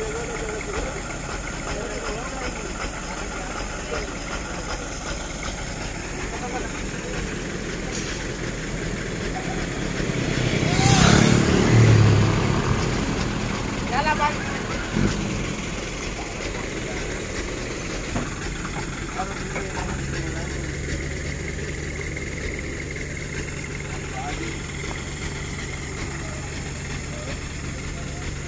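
Truck engines idling with a steady low drone, with faint voices around. The engine noise swells loudly for a couple of seconds about eleven seconds in.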